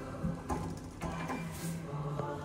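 Lift car doors closing after a car call button is pressed: a sharp click about half a second in, another a second in, over a steady low hum from the door operator as the doors slide shut.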